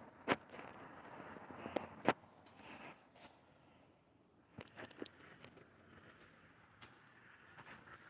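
Quiet footsteps and scuffing on a shop floor, with a few sharp clicks and taps, the loudest ones within the first two seconds.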